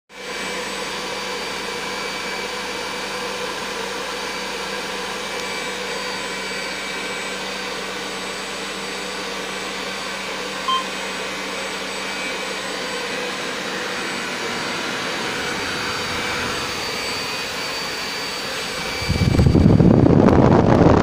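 Electric ducted fan of a Freewing L-39 model jet, an 80 mm fan on an inrunner motor, running steadily at low throttle: an even rush of air with a high whine, and a short beep about halfway through. About a second before the end it is throttled up into a much louder rush of air.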